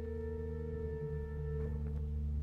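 Sacred choral music with organ: a long held high note over sustained low chords, whose bass notes change about a second in.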